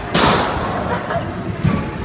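A short, loud crash about a tenth of a second in, fading within half a second: a rider landing a front flip in a foam pit, the loose foam blocks taking the impact.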